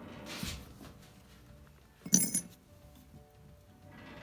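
A pre-1964 90% silver coin dropped from pliers into a hot crucible, landing with one sharp clink about two seconds in.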